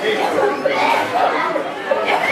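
Many voices overlapping at once, a congregation praying aloud and calling out together so that no single voice stands clear, in a large room.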